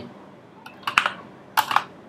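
A handful of separate, irregularly spaced keystrokes on a computer keyboard as a line of code is typed.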